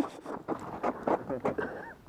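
Boots fitted with ice cleats stamping on ice in a quick run of sharp taps, about four or five a second, in an impromptu step dance.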